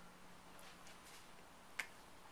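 Near-silent room tone broken by faint rustling and then one sharp click near the end.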